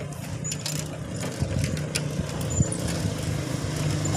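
Steady low drone of a motor vehicle engine over road and wind noise, with a few light clicks.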